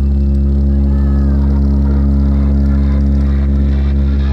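A loud, steady, deep bass tone played through a truck-mounted DJ speaker stack, held without change: a bass drone used as a speaker check.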